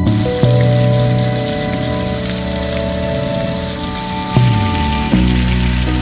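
Water spraying and splashing from a large bronze sculpture fountain, a dense steady hiss like heavy rain, over background music with held notes and a bass line.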